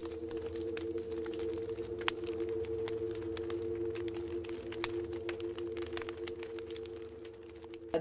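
Intro soundtrack under a title card: a sustained drone of two steady held tones over a low hum, with irregular crackles and clicks scattered through it. It fades down over the last few seconds.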